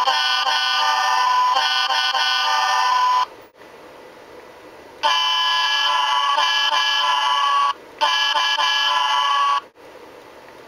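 Model railroad sound decoder playing its digitized diesel locomotive air horn samples through the model's speaker, in 8-bit quality: a multi-tone horn chord held until about three seconds in, then after a pause another long blast followed by a shorter one.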